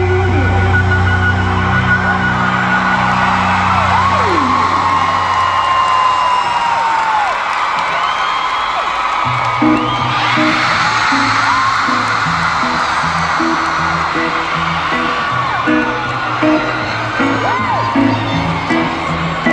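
Live band in an arena: a held chord rings out and fades under a crowd screaming and whooping. About ten seconds in, an electric guitar starts a rhythmic riff while the crowd keeps cheering.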